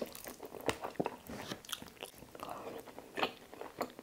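Close-miked chewing and biting of lechon paksiw (roast pork stewed in a vinegar sauce), eaten by hand: irregular sharp wet mouth clicks and short crackles as the meat is torn and chewed.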